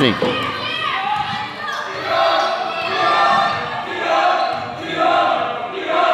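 A basketball being dribbled on a gym floor over the chatter of spectators.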